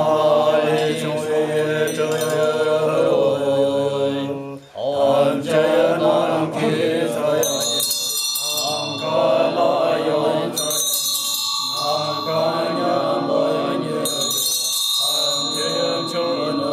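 Tibetan Buddhist monks chanting in unison in low, sustained voices, with a short break about four and a half seconds in. From about halfway, handheld ritual bells (drilbu) ring in repeated spells over the chant.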